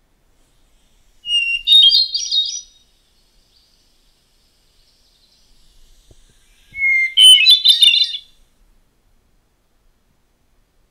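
Hermit thrush singing two flute-like phrases a few seconds apart. Each opens on a clear held note and breaks into a quick tumble of higher notes, and the second phrase starts on a lower opening note than the first.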